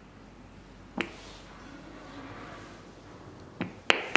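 Clicks of the Defi5S AED's ON/OFF push button being pressed: one sharp click about a second in, then two in quick succession near the end, as the defibrillator is switched off and back on.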